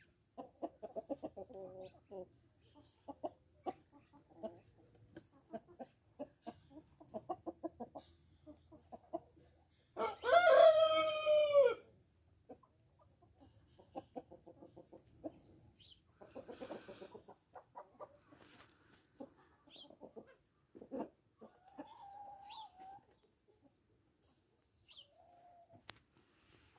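Salmon Faverolles chickens clucking in short pulses, with a rooster crowing once, loudly and for about two seconds, about ten seconds in.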